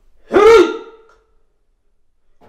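A person's short, loud vocal cry, a gasp-like 'aah' whose pitch rises and then falls, about half a second in, followed by silence.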